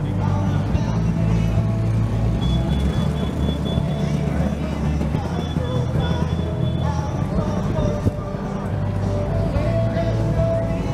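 Background music, a song with a steady bass line.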